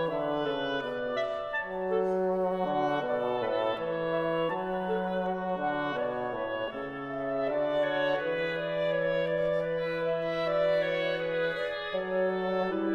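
Woodwind trio of oboe, clarinet and bassoon playing a slow andante movement: several long, overlapping held notes, with the bassoon sustaining low notes beneath the two upper voices.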